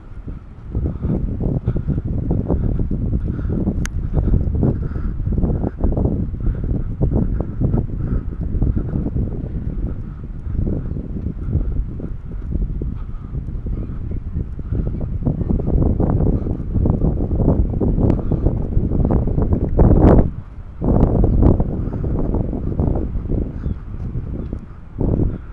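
Wind buffeting the camera microphone: a loud, irregular low rumble that eases briefly about twenty seconds in.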